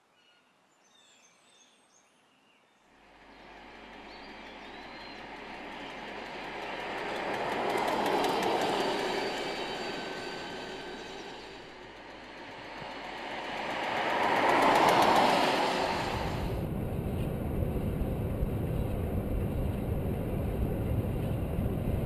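Renault DeZir electric concept car on the track, with no engine sound: tyre and road noise with a faint electric whine swells up twice, loudest about 8 and 15 seconds in. From about 16 seconds in it becomes steady wind and road noise heard from right on the car.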